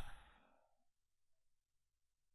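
Near silence. A man's narrating voice dies away in a short echo in the first half-second, and then nothing is heard.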